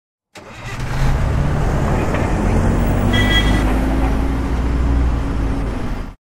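A motor vehicle's engine and road noise, loud and steady, rising in over the first second. A short high tone sounds about three seconds in, and the noise cuts off abruptly at the end.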